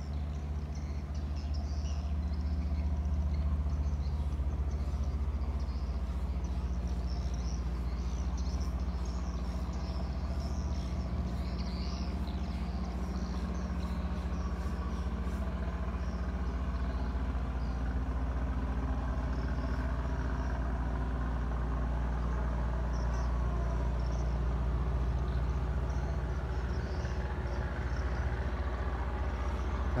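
A motor running steadily with a low, even hum that holds unchanged throughout.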